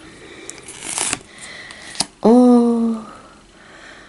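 Pokémon trading cards being handled: a card is slid off the front of a hand-held stack with a papery rustle, loudest about a second in, followed by a light tap about two seconds in.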